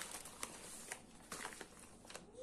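Faint rustling and crinkling of a plastic mailer bag and paper wrapping as a bundle of seed packets is pulled out, with a few light clicks.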